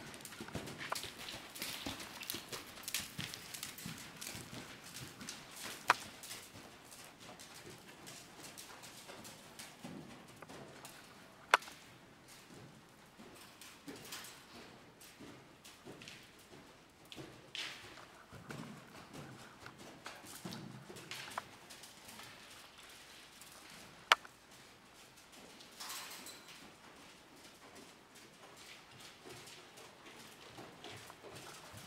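A horse's hooves trotting on soft sand arena footing, giving a run of muffled, uneven hoofbeats. Three sharp, short clicks stand out louder than the hooves, spaced through it.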